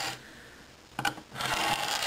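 Blunt back end of a hobby knife dragged along a straightedge over a vacuum-formed plastic sheet, scribing a line to snap off the excess. After a quiet first second, a tick as the blade meets the plastic, then a scraping stroke.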